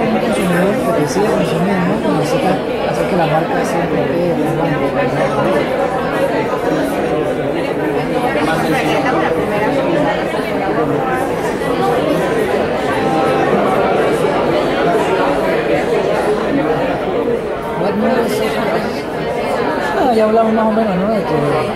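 Many people talking at once in a large room: a steady, indistinct hubbub of overlapping conversations, as an audience talks among itself in small groups.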